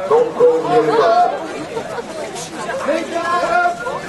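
People's voices talking and chattering in a group, with no other clear sound.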